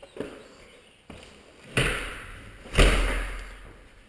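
Two heavy thuds about a second apart, each ringing on in an empty room with hard floors, with two fainter knocks before them.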